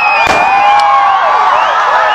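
Crowd cheering and shouting, many voices at once, at a fireworks display. A firework bang comes about a third of a second in and a lighter crack just before the middle.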